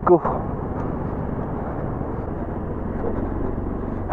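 Bajaj Pulsar NS200 single-cylinder motorcycle running at low speed, a steady mix of engine and road noise with no changes in pitch.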